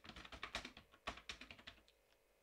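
Computer keyboard typing: a quick, irregular run of faint keystroke clicks as a line of text is typed.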